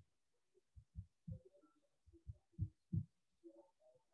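Faint, irregular low thumps, about eight of them, from the desk being knocked while writing, picked up through a video-call microphone.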